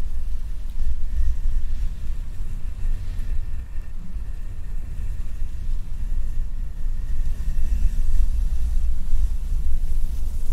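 Gloved hand rubbing against a microphone's mesh grille, giving a continuous, uneven low rumble of handling noise.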